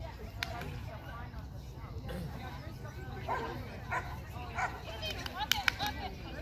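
Small dog barking in short, sharp yips, a few spaced apart and then quicker and louder near the end, over a low background murmur of voices.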